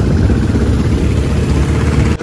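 Motorcycles riding: loud, steady engine and road noise, heaviest in the low end.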